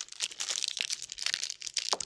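Plastic trading-card pack wrappers crinkling and tearing as several packs are ripped open at once, a fast, dense crackle.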